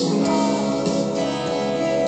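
Gibson Les Paul Studio electric guitar through a Fender '59 Bassman amplifier, playing sustained ringing chords, with a chord change just after the start.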